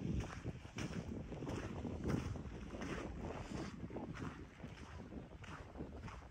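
A walker's footsteps on coarse lakeshore sand and gravel, one step roughly every half second to second, under a steady low buffeting of wind on the microphone.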